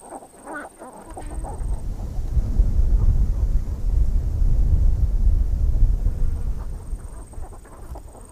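Birds clucking in short calls near the start and again near the end. A loud low rumble fills the middle few seconds.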